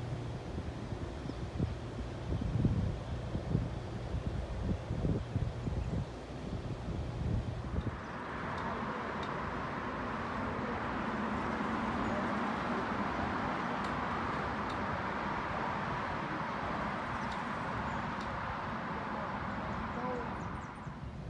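Wind buffeting the microphone in uneven low gusts for about eight seconds, then, after a cut, a steady, even rushing noise that holds to the end.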